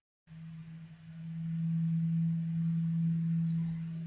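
A steady low hum: a single unchanging tone that swells in over the first second, holds level, and cuts off just after the end.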